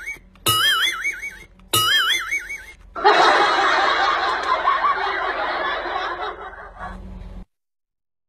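A cartoon-style comedy sound effect, a wobbling whistle-like tone, plays twice more about a second apart. Then about four seconds of canned crowd laughter, which cuts off suddenly near the end.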